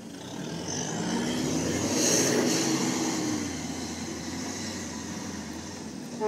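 Off-road vehicle's engine working over rough ground, its pitch rising then falling, loudest about two seconds in before easing off.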